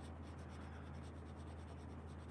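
Coloured pencil shading on paper: the pencil tip rubbing steadily back and forth over the drawing, a faint, even scratching.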